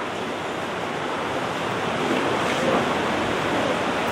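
A steady rushing hiss with no speech in it, growing slowly and slightly louder: background noise of the room and microphone.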